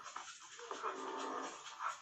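Movie soundtrack: a run of short, pitched, breathy cries, about one every second, over faint music.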